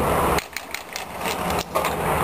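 Roller hockey play: sharp clacks of sticks and puck and the rolling of inline skates on the rink floor, several short knocks after the background voices cut off about half a second in.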